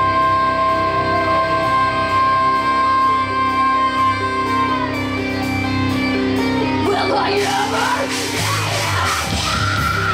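Live heavy metal band playing: a held guitar chord with a sustained high note for about the first five seconds, then the sound turns denser and noisier, with yelling near the end.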